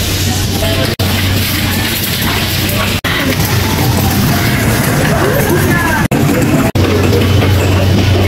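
Supermarket room sound: a steady low hum with indistinct voices and music mixed in, broken by a few sudden split-second dropouts.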